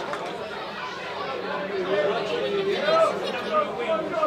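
Football crowd on the terraces chattering, with scattered voices calling out over the general murmur.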